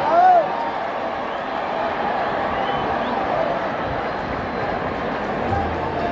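Stadium crowd at a football match: many voices shouting and calling at once in a steady din, with one loud call just after the start.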